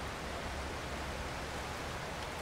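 Steady background hiss with a low hum underneath: the scene's ambient room tone, with no distinct event.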